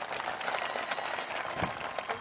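Audience applauding, a steady spread of many hands clapping.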